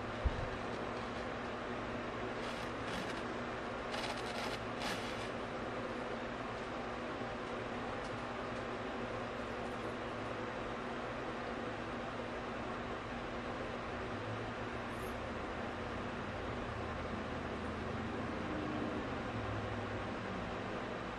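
A steady low hum with several faint held tones, with a few short crunches about three to five seconds in as a fried chicken strip is chewed.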